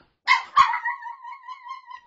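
Small dog, alone and distressed by separation anxiety, heard through a Furbo pet camera's microphone: a sharp yelp about a quarter second in turns into one long, level, high howl.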